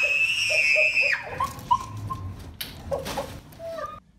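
A woman screaming in fright: one long, high, wavering scream lasting about a second, then shorter broken cries and yelps.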